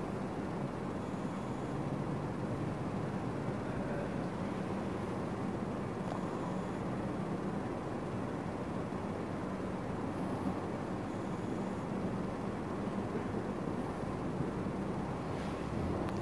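Steady low hum and hiss of room background noise, with no distinct events.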